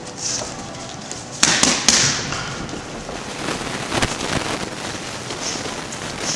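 Boxing gloves striking focus mitts with sharp slaps: three in quick succession about a second and a half in, the loudest, then another single strike near four seconds, with lighter hits between.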